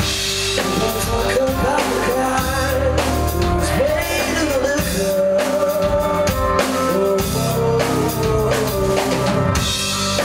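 Pop-rock band playing live: drum kit and bass under a male lead vocal singing a held, wavering melody into the microphone.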